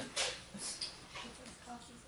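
Faint, brief bits of voice and breath, a few short murmurs spaced through the moment, trailing off after a loud laugh.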